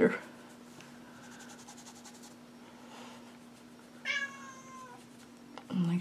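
A house cat meows once, about four seconds in: a single call of just under a second that falls slightly in pitch, over a faint steady hum. Its owner takes the meow as the cat wanting to play fetch.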